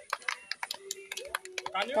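Irregular sharp clicks and taps, several a second, with children's voices coming in near the end.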